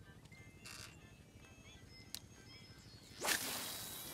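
A fishing rod swishing hard through the air as it is cast, a little over three seconds in, followed by a fading hiss. A brief softer swish comes about a second in.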